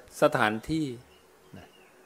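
A man's voice speaks briefly at the start. In the pause that follows there is a faint wavering insect buzz over a low steady hum.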